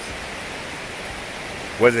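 Steady rushing of a creek flowing over rocks and small rapids, an even, continuous hiss. A man's voice cuts in near the end.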